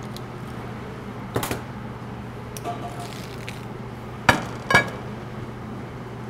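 Steady low kitchen hum with a few light knocks and clinks of kitchenware, once about a second and a half in and twice in quick succession near the fourth second.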